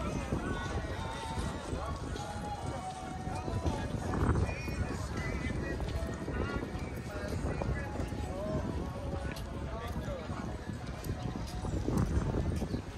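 Outdoor boardwalk ambience: voices of passers-by talking over a steady low rumble, with a louder surge of rumble about four seconds in.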